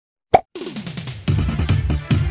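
A short, loud pop sound effect, then electronic background music starts with a falling low note and settles into a steady beat.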